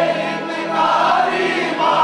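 A male voice sings a Hindi Khatu Shyam bhajan into a microphone over musical accompaniment, holding and bending long notes.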